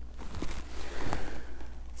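A man's long, soft breath in during a pause in speech, over a steady low hum.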